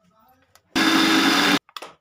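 An electric mixer grinder runs in one short burst of under a second, grinding coconut pieces in its steel jar, then cuts off suddenly. A few short clicks follow.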